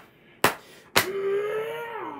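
Children's picture books slapped together in a mock fight: two sharp slaps about half a second apart, continuing a run of slaps at about two a second. A held pitched sound follows from about a second in, rising slightly in pitch.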